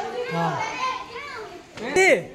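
A group of children talking and calling out over one another, with one louder rising-and-falling call near the end.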